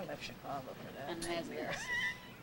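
Indistinct voices of people talking in a hall, with one voice rising in pitch near the end.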